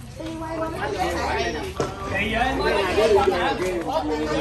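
Several people talking at once: overlapping chatter of voices, busier in the second half.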